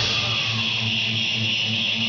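Live symphonic metal band amplified in a club as a song thins out: the heavy low end drops away a fraction of a second in, leaving a held low note pulsing about four times a second under a steady high wash.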